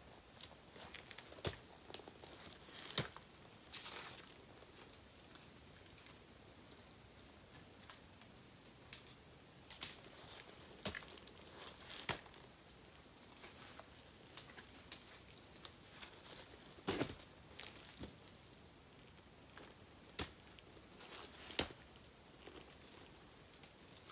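Faint, irregular knocks and scrapes of climbing spurs' gaffs biting into tree bark, with a lineman's belt shifted up the trunk, as a man climbs a tree step by step. There is a sharp tick every second or two.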